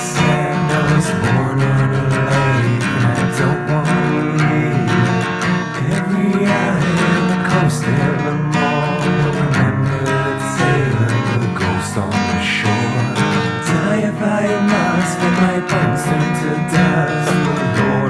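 Folk song recording carried by a strummed acoustic guitar.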